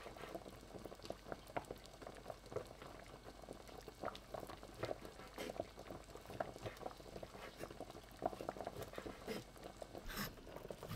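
Water boiling in a pot of peeled potatoes, a faint, steady run of small irregular bubbling pops.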